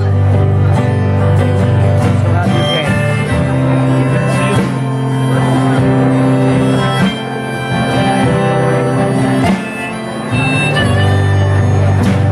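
Live acoustic guitar strumming with a harmonica played on a neck rack: an instrumental break between sung verses, with a couple of brief drops in level.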